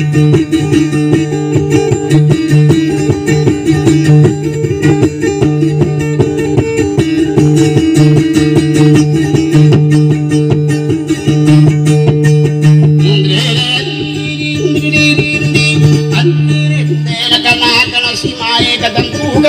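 Acoustic guitar picked rapidly in a steady run of plucked notes, over a low held tone that cuts off near the end.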